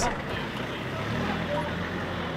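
Minibus engine running at low speed as the van drives off, a steady low hum.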